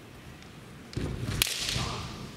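A sharp crack of a bamboo shinai striking, about a second and a half in, just after a thud.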